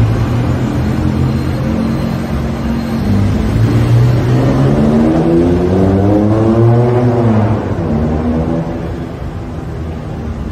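Road traffic: a vehicle engine running steadily, with one engine rising in pitch as it accelerates from about four seconds in, then dropping away near eight seconds.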